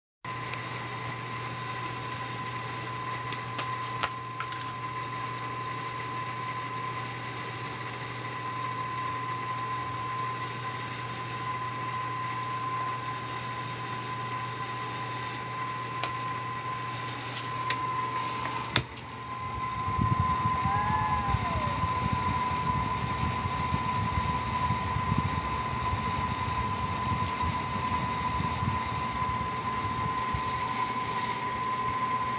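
Steady mechanical hum with a constant high whine above it. From about two-thirds of the way through, a louder, uneven low rumble joins in.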